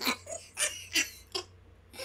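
A man laughing quietly in a few short, breathy bursts over the first second and a half.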